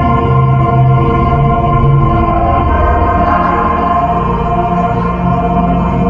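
Digital keyboard playing a slow piece in long held chords over a low bass note that repeats about twice a second. The bass fades midway through and comes back near the end.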